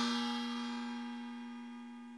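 The last note of a piece of background music ringing on after the beat stops and fading away steadily.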